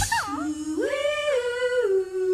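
A voice humming a short unaccompanied tune in long held notes: a quick swoop down at the start, then a low note that steps up and later back down.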